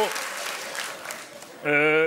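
Audience applause dying away over the first second and a half, followed near the end by a man's voice holding one drawn-out sound.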